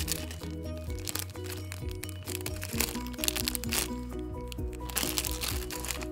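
Background music with a repeating melody of short held notes over a steady bass. Over it, clear plastic squishy packaging crinkles as it is handled.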